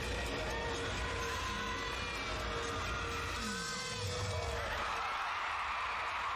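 Arena crowd ambience: a steady wash of crowd noise with faint scattered voices, swelling a little near the end.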